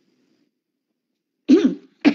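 Near silence, then about one and a half seconds in a short, loud burst from a person's voice, heard over an online voice-chat line.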